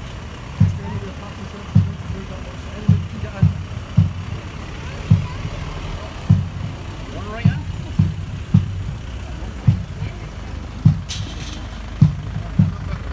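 A bass drum beating a steady march time, with heavy low thumps about every half second to second. Crowd chatter runs underneath, and a brief crackle comes near the end.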